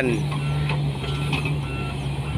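Volvo excavator's diesel engine running under hydraulic load as the bucket scoops and lifts soil: a steady low hum, with faint short warning beeps repeating several times.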